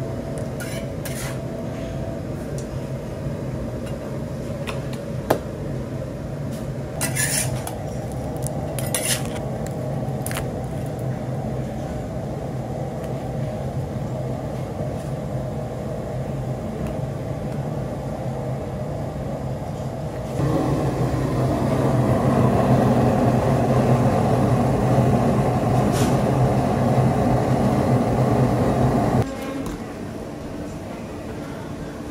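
Steel candy scrapers clinking and scraping on a stainless steel table as boiled sugar candy is worked, over a steady low hum. About two-thirds of the way in, a louder steady rushing noise comes in and cuts off suddenly near the end.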